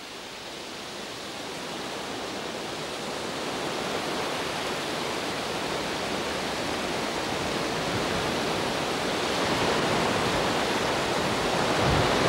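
Sea surf washing onto a sandy beach: a steady hiss of water that fades in and grows gradually louder.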